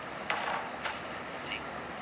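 Speech: a voice in conversation says "See?" over a steady background hiss.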